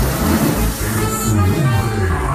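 Loud live band music from a Mexican cumbia group, with a prominent moving bass line under the full band.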